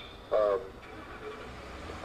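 A man's brief wordless vocal sound, about half a second long, near the start, over the steady hiss and low hum of a video-call audio line.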